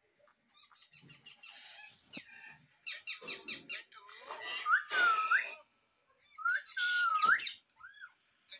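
Parrot whistles and chirps among short clicks, with two drawn-out whistles that dip and then rise, about five and seven seconds in, the loudest sounds.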